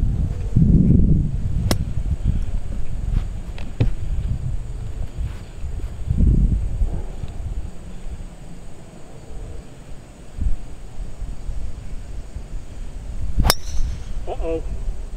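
Wind buffeting the microphone, with a few light clicks, then near the end one sharp crack of a driver striking a golf ball off the tee.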